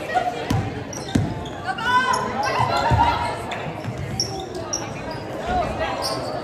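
A basketball dribbled on a hardwood gym floor: several separate low bounces, with players and spectators shouting around it.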